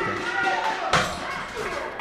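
A sharp thump about a second in from the wrestling ring, over a faint murmur of crowd voices in the hall.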